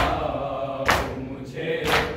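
A group of men chanting a nauha together, cut by loud unison chest-beating (matam) slaps about once a second: at the start, about a second in, and near the end.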